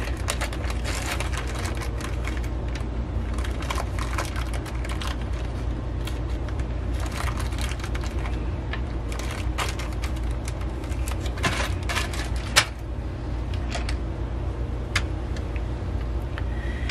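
Small clear plastic zip-lock bag crinkling and crackling in the fingers as it is picked open and handled, a run of quick irregular crackles, over a steady low hum.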